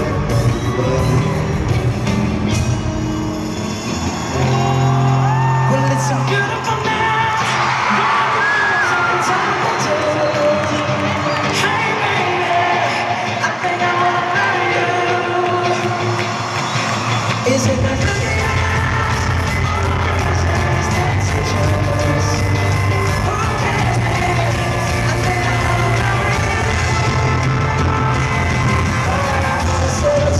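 A live pop-rock band playing in an arena, heard through a handheld camera's microphone, with electric guitars and drums under singing. A few seconds in, the bass and low end drop out. They come back in with the full band about 18 seconds in.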